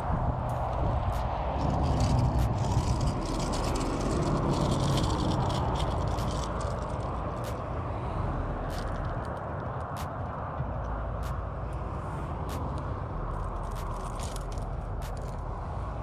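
Scraping and clicking as a hooked ladyfish is pulled in on the line and handled, the fish held in the hand and the lure worked loose. These scattered clicks sit over a steady low rumble.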